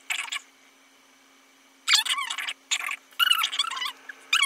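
Short squeaky, squelching bursts from a damp makeup sponge dabbed against the skin: one brief burst at the start, then three quick bursts in the second half.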